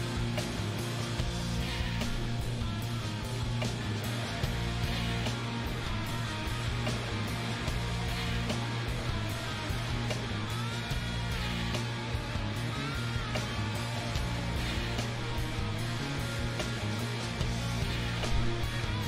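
Live rock band playing a slow, laid-back song, with electric guitar over drums, bass and keyboards. The steady bass runs throughout, and there are a few sliding guitar notes about ten to thirteen seconds in.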